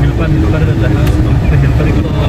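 Low, steady engine and road rumble of a Toyota car on the move, heard from inside the cabin, with faint voices over it.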